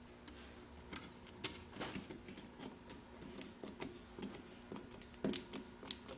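A flathead screwdriver tightening a metal hose clamp around a trolling motor shaft: faint, irregular small clicks and scrapes.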